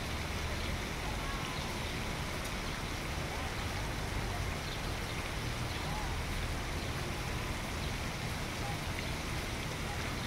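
Steady outdoor city background hum with faint distant voices, and no music playing.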